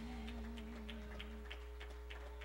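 Low steady hum from a church PA system in a pause between songs. The last held note of the music wavers and fades out about a second and a half in, under faint, quick, regular ticking.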